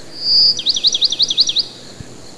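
A songbird singing loudly: one held high whistle, then a fast run of about six downslurred notes.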